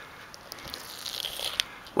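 Soft rustling handling noise with a few light clicks as a snake is held and pushed against a wall, the rustle growing a little louder about halfway through.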